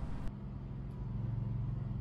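A steady low hum with a faint thin high tone over soft background noise.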